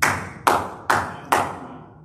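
A man clapping his hands four times at an even pace, about two claps a second, each clap ringing briefly in the room.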